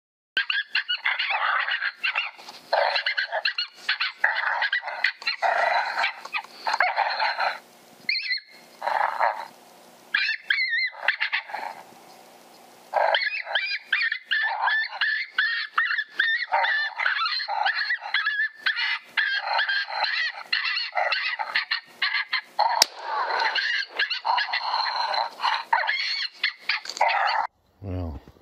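Lucky Duck electronic predator caller playing recorded coyote vocalizations: a busy run of yips, whines and wavering howls, with a few short pauses midway.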